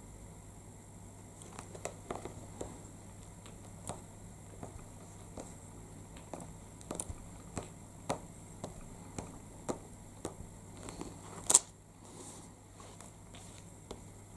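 Faint handling sounds of a clear acrylic stamp block pressed down on card and lifted off: scattered light taps and rubs, with one sharper click late on, over a low steady hum.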